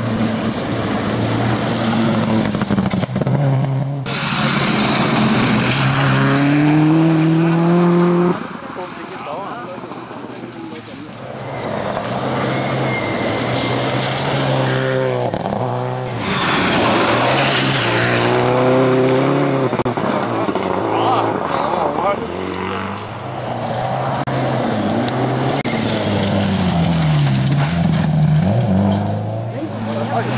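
Rally cars on a gravel special stage passing one after another, engines revving hard with the pitch climbing and then dropping at gear changes and lifts.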